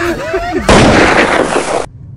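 A loud, even burst of noise that starts suddenly about two-thirds of a second in, lasts about a second and stops abruptly.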